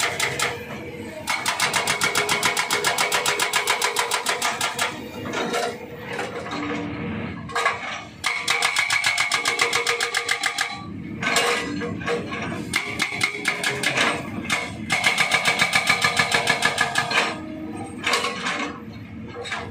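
Hydraulic rock breaker on a Kobelco SK200 excavator hammering rock, with rapid blows several times a second. The blows come in bursts of two to four seconds with short pauses between them.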